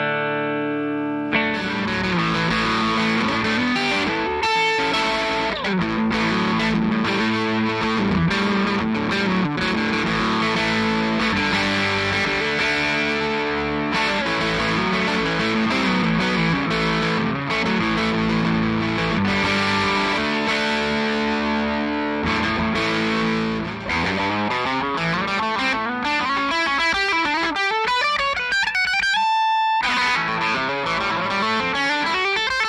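A 2006 Gibson Vegas Standard electric guitar played through a Gibson Super Goldtone GA-30RV tube amp. A held chord rings for about a second, then busy riffs and lead lines follow, with a quick run up the neck just before the end.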